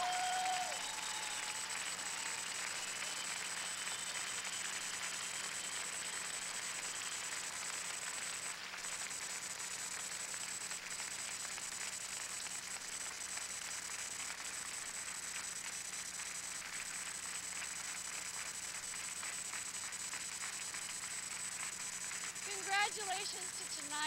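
Audience applauding steadily, a dense even clapping that holds throughout.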